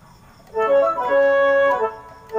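Yamaha PSR keyboard's Orch Woodwind voice playing a short phrase of a few notes, beginning about half a second in, with the longest note held in the middle. The voice is still dry and unedited, plain with no reverb or delay added.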